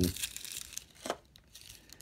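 Plastic packaging rustling and crinkling as a hand works in a black plastic blister tray and its wrapping. It is strongest in the first half second, with another short crinkle about a second in.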